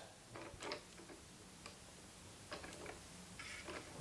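A few faint, irregular clicks from the elevation mechanism of a metal-and-plastic OO gauge model railgun cannon as the barrel is pressed to raise or lower it into its click-stop positions.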